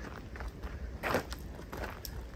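Footsteps of a person walking, a few separate steps with the one a little past the middle the loudest.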